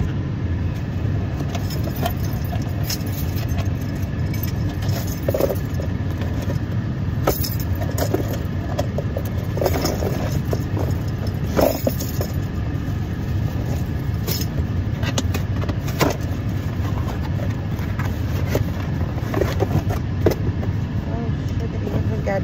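Rustling, scraping and clicking of a package being opened by hand, with the phone rubbing against clothing. A steady low rumble runs underneath.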